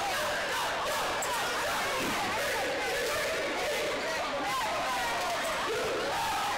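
Gym crowd at a basketball game: a steady babble of many spectators talking at once, with no single voice standing out.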